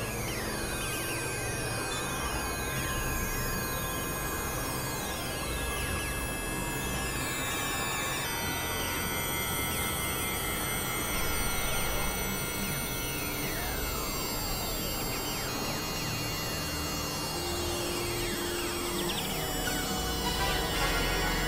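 Experimental electronic synthesizer drone music: layered held tones over a low drone, with many overlapping pitch sweeps sliding downward.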